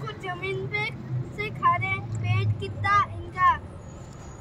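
A string of short, high-pitched vocal calls, each gliding up or down in pitch, over a low steady hum.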